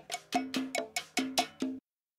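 Cowbell struck in a quick, even run of about four or five hits a second, isolated from a band recording by stem separation. It cuts off abruptly into dead silence near the end.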